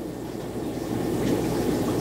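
Aquarium filtration running: a steady low rushing of moving water, swelling slightly after the first moment.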